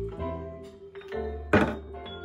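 Music with held pitched notes over a bass line, played through a bare 1950s Tannoy Silver 12-inch dual concentric driver (LSU/HF/12L) out of its cabinet. A single sharp thunk cuts in about one and a half seconds in.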